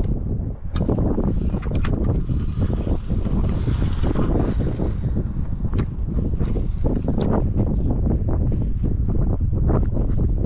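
Wind buffeting the microphone in a steady low rumble, with scattered sharp clicks and knocks from handling a spinning rod and reel.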